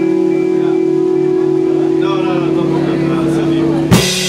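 Live rock band music: a held chord rings out steadily with no drums under it. Just before the end a loud crash marks the drums coming back in.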